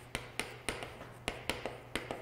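Chalk writing on a chalkboard: a run of sharp, short taps, about four a second, as the chalk strikes and strokes out characters.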